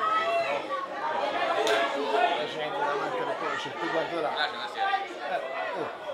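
Indistinct chatter of spectators, several voices talking over one another at once.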